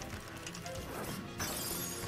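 Anime soundtrack music with steady low notes, broken about one and a half seconds in by a sudden crash of noise.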